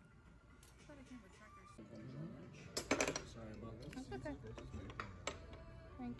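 Low background conversation at a dinner table, with a few sharp clinks of fondue forks and dishes, the loudest about three seconds in and another a little after five.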